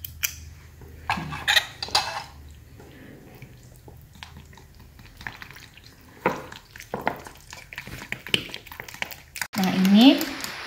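A metal fork stirring batter in a glass bowl, with irregular clinks and scrapes of the fork against the glass as flour is mixed into beaten egg and milk.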